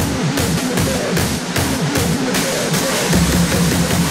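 Raw hardstyle track with a fast, pounding beat; about three seconds in, the bass turns into one continuous low sound.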